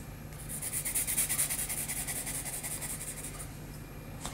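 Pencil scratching on sketchpad paper in a rapid run of short back-and-forth strokes, drawing small lines and shading. The strokes thin out near the end.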